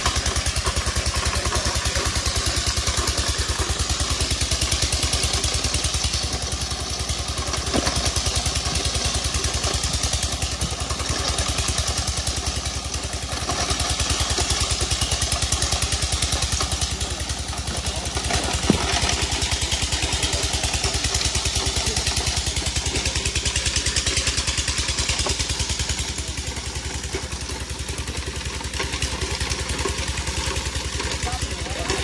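The engine of a stone-grinding machine running steadily, with a couple of sharp knocks of crowbars on rock.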